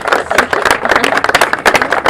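A small group of people applauding, many hands clapping in a dense, uneven run of claps.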